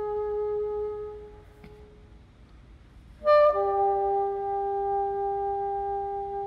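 Solo bassoon playing long held notes in a contemporary classical piece. A sustained note fades away in the first second or two, and after a short pause a loud, accented entry about three seconds in jumps briefly to a higher note, then settles into a long held lower note.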